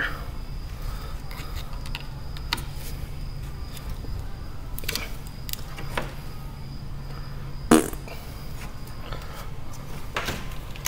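Scattered small clicks and knocks from hand work on a car's front end: plastic retaining clips being pried out around the A/C condenser. They come over a steady low hum, with one sharper, louder knock about three-quarters of the way through.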